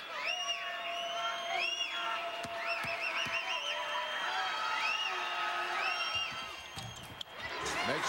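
Basketball arena crowd during a free throw: many short high-pitched whoops and whistles rising and falling, with a few long held tones, over steady crowd noise.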